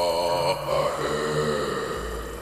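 Soundtrack music: a chanting voice holding long, wavering notes over a low steady drone.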